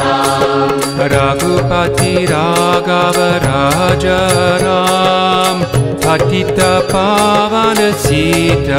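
Voices singing a Hindu devotional kirtan chant over held instrumental tones, with a steady percussive beat.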